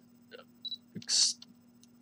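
Faint clicks from a Canon EOS 5D's controls being worked by thumb, with a brief short hiss just after a second in.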